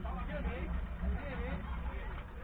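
A 4x2 safari race car's engine running steadily as a low rumble, heard from inside the car, with a voice talking over it that cannot be made out.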